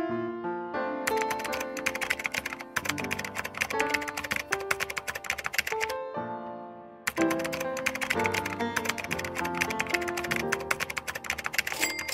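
Rapid keyboard typing clicks, a typing sound effect, over light background piano music. The clicking comes in two spells with a short break around the middle.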